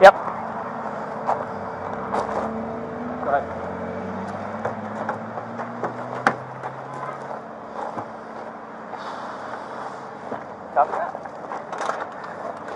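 Steady low hum of vehicle engines running, with scattered light clicks and rustles as people walk over gravel. Faint voices come through now and then.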